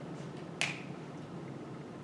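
A single sharp click about half a second in, a whiteboard marker's cap snapping on or off, over faint room hum.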